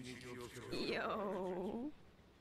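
A person's voice making one drawn-out vocal sound about a second long, sliding down in pitch and then wavering.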